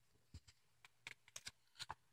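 Near silence with a scattering of faint small clicks, more of them in the second half: a paper picture book being handled between pages.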